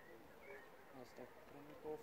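Near silence: faint outdoor ambience, with a voice starting to speak near the end.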